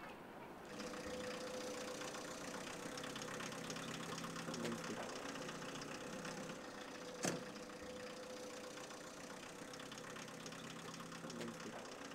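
A faint engine or machine running steadily, with a single sharp click about seven seconds in.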